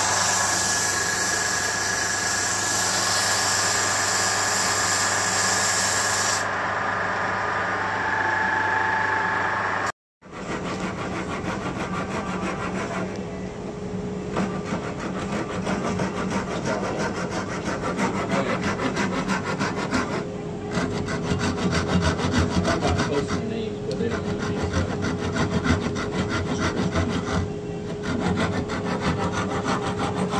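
A wood lathe running steadily for the first few seconds. After a short break, a hand saw cuts back and forth through the end of a turned wooden mallet in a long run of quick strokes.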